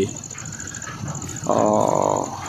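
An animal's single drawn-out call, steady in pitch, starting about a second and a half in and lasting under a second, over faint outdoor background noise.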